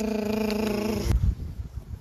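A woman's voice making a drumroll sound: a rolled-r tongue trill held at one steady pitch, stopping about a second in.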